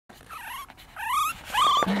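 A four-week-old Yorkshire terrier puppy giving three short, high-pitched whimpers, the second rising in pitch.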